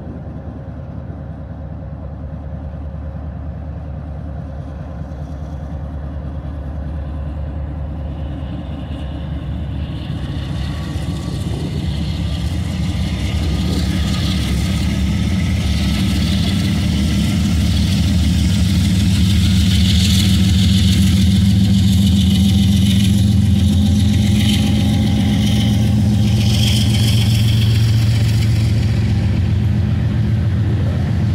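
Several diesel-electric freight locomotives pulling a train out of the yard, their engine drone growing steadily louder as they draw near, with a higher hiss joining about a third of the way in.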